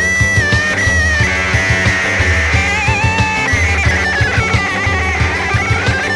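Rock band music: guitar over a steady drum beat, with a high melodic line that holds notes and slides between them.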